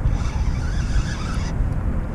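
Wind buffeting the microphone: a low, irregular rumble with a fainter wash of water noise above it.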